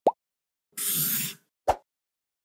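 Logo-animation sound effects: a short pop rising in pitch, then a swish of about half a second about a second in, then another short pop near the end.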